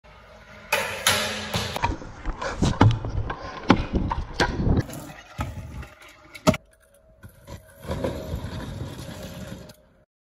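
Stunt scooter wheels rolling over concrete and rough asphalt, with several sharp clacks and knocks from landings and the deck striking the ground. The sound comes in short bursts broken by abrupt cuts.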